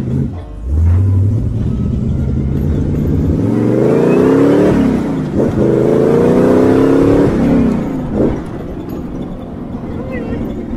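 Rat rod's engine pulling hard under acceleration, its revs climbing, then dropping sharply at a gear change about five seconds in, climbing again and dropping at a second shift near eight seconds.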